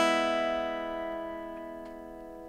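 Acoustic guitar: notes plucked up through the top three strings over an E chord shape ring together and fade away slowly.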